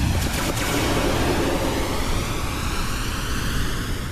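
Intro sound effect: the long rushing tail of a boom, a hiss with a slow phasing sweep through it, holding steady and then starting to fade.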